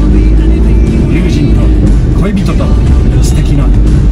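Steady low rumble of a vehicle's engine and tyres heard from inside the cabin while driving, under background music.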